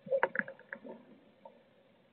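A blue tit moving about on the floor of a wooden nest box: a quick run of taps and scratches in the first second, then fainter rustling.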